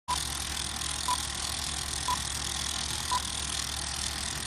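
Film-leader countdown sound effect: a short high beep once a second, four times, over the steady whir and hiss of a running film projector.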